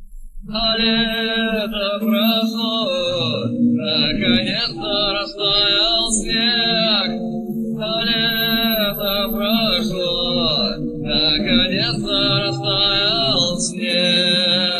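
A cappella singing: layered voices holding a low droning note under a higher melodic line sung with vibrato, without clear words, pausing briefly every few seconds.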